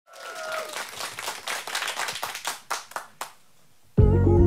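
Hand clapping that thins out to a few single claps and stops about three and a quarter seconds in.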